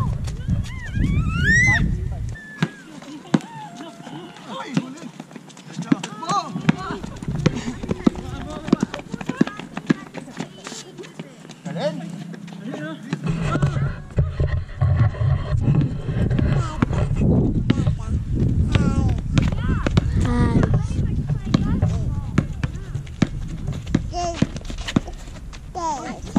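Outdoor pickup basketball: players' voices calling out across the court, and the ball bouncing on the asphalt as many short, sharp taps.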